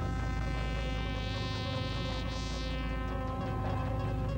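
Science-fiction film soundtrack: a sustained drone of many held tones over a deep low rumble, with higher tones swelling up in the middle and then fading back.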